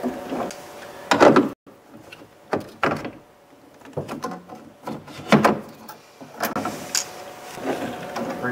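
Large channel-lock pliers working the tightly wound balance spring on a power window regulator inside a car door. There is a series of sharp clanks and rattles, the loudest about a second in.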